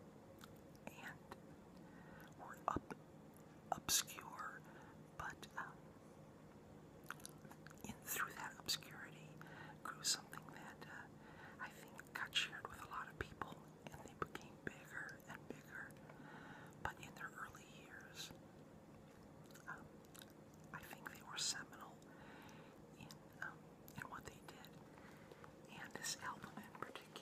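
A person whispering softly, with scattered short mouth clicks and chewing sounds.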